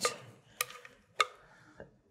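Light clinks of a spatula and glass mixing bowl against aluminium cake pans as batter is scraped out: two sharp clinks about half a second apart, the first with a short ring after it, and a fainter one near the end.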